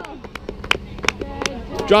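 A few scattered, sharp hand claps from teammates on the sideline, with faint voices behind them.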